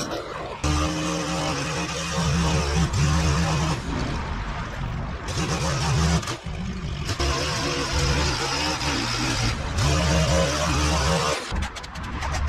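String trimmer running at high throttle while its line cuts along the edge of a concrete driveway strip. The steady motor note and cutting hiss drop away briefly a few times as the throttle is eased.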